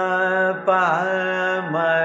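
A male Carnatic vocalist singing the swara syllables "pa" and "ma" from a varnam in raga Sudhadhanyasi, holding one note, then sliding down and back up in an ornamented gamaka about halfway through before moving to the next note. A steady drone sounds underneath.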